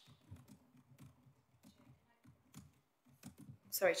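Faint, scattered key clicks of typing on a laptop keyboard. A woman's voice starts near the end.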